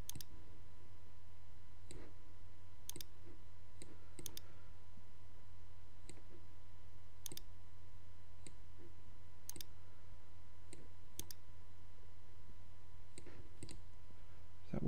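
Computer mouse button clicks, single and sometimes in quick pairs, about one every second or two, over a steady low electrical hum.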